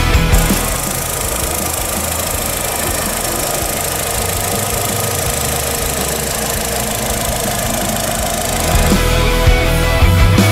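Volkswagen Saveiro's 1.6-litre four-cylinder engine idling steadily, recorded at the open engine bay. Rock music cuts out just under a second in and comes back near the end.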